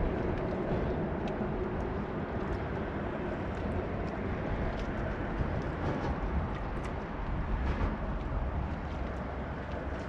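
Steady low rumble of traffic on the bridge overhead, with a few faint ticks over it.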